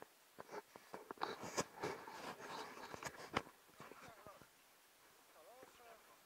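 Splashing of feet wading through shallow river water, a quick run of splashes over the first few seconds that thins out as the wader reaches the bank. A faint voice is heard near the end.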